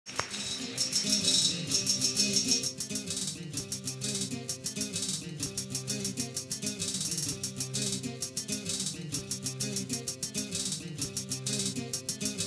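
Instrumental opening of a Galician muiñeira: acoustic guitar under a fast, dense rattling percussion rhythm, with sustained low notes held underneath. The music is loudest in the first three seconds.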